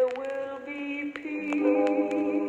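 Several voices singing long held notes in close harmony in a country gospel song, with more voices joining the chord about one and a half seconds in. Small clicks sound over the singing.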